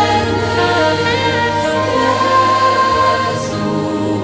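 Choral music: voices singing long held notes in several parts, with some slower melodic movement.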